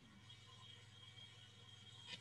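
Near silence: a faint steady hum and hiss on the call's audio line.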